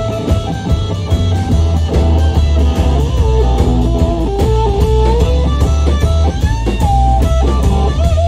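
Rock-and-soul band playing live, loud: an electric guitar plays a lead line of bending notes over electric bass and a drum kit.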